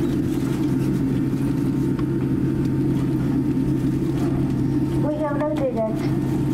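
Steady low cabin hum of a Boeing 787-8 taxiing after landing. About five seconds in, a woman's voice starts over the cabin PA.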